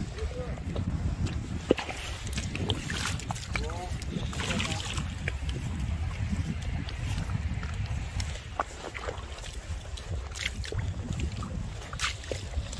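Wind rumbling on the microphone over wet tidal mudflat, with scattered small clicks and splashes from footsteps and handling in mud and shallow water, and faint voices about four to five seconds in.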